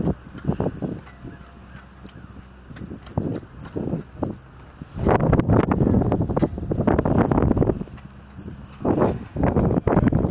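Wind buffeting the microphone outdoors, heaviest in a long gust about halfway through, with scattered knocks and clicks from handling. A faint steady low engine hum runs underneath.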